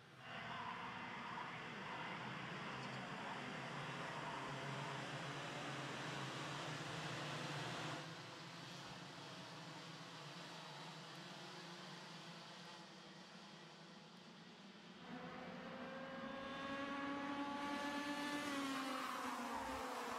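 A pack of IAME X30 125cc two-stroke kart engines racing. Steady engine noise for the first part, quieter in the middle, then from about three quarters of the way in several engine notes climb in pitch together and grow louder as the karts accelerate.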